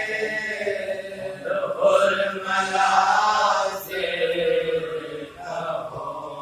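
Men's voices chanting a marsiya, an Urdu elegy, in long drawn-out melodic lines, with a short break about five seconds in.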